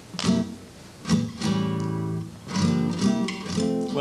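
Nylon-string acoustic guitar playing a short passage of plucked notes, with a ringing chord held for about a second in the middle, then a run of quicker notes.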